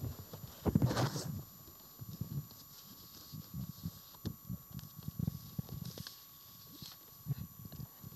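Irregular soft thumps and knocks with a brief rustle about a second in: footsteps and the handling of papers and a handheld microphone as a man settles at a lectern.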